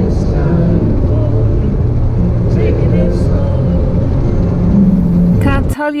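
Van driving at highway speed, heard as a loud, steady low rumble of road and engine noise that cuts off abruptly near the end.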